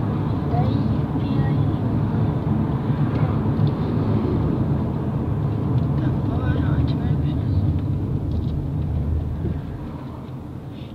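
Steady road and engine rumble heard inside a moving car's cabin. It eases off a little near the end.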